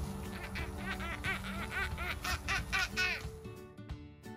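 A child laughing hard, a quick run of high-pitched "ha-ha" bursts about four a second that stops about three seconds in, over background music.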